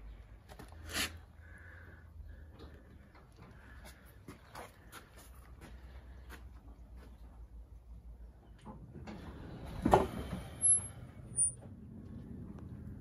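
Quiet outdoor background with a faint low hum and scattered light clicks, then one sharp knock about ten seconds in, followed by two brief high-pitched chirps.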